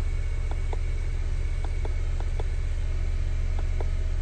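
Car engine idling at about 950 rpm, a steady low hum heard from inside the cabin, with a run of light clicks as the scan tool's down-arrow button is pressed over and over.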